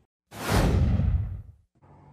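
A whoosh transition sound effect: a rush of noise starts suddenly about a third of a second in, its hiss sinking lower as it fades away over about a second.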